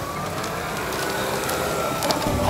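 Powered wheelchair driving past close by: a faint electric motor whine, rising slightly, over tyre noise on tarmac.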